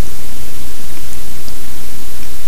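Loud, steady hiss and static of an amplified microphone noise floor, with a faint low hum underneath.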